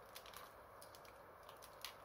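Near silence with a few faint, light clicks of a plastic action figure's joints being handled, the clearest near the end.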